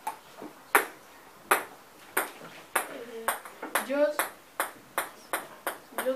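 Table tennis rally: a ping-pong ball clicking off rubber paddles and a desktop in sharp, short ticks, about one to two hits a second.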